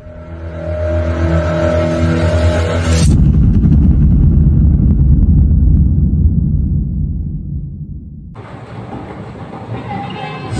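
Intro sound effect: a steady pitched drone, a sudden hit about three seconds in, then a loud, deep, vehicle-like rumble that fades away over the next five seconds.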